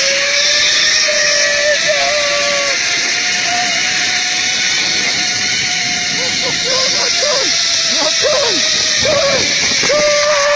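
Zipline trolley pulleys running along the cable: a steady whine that creeps up a little in pitch, with wind rushing over the microphone.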